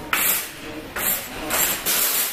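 Camera-handling noise: the microphone scraping and rubbing against skin or fabric in about four short, rough bursts.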